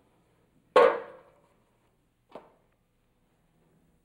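A metal cooking pot set down on a gas stove top: one loud clank that rings briefly, then a lighter knock about a second and a half later.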